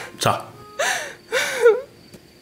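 A person's voice: a brief word and a few short, breathy gasps.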